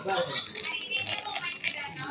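Small plastic candy wrapper crinkling and crackling in the fingers as a gummy sweet is unwrapped, in quick irregular crackles.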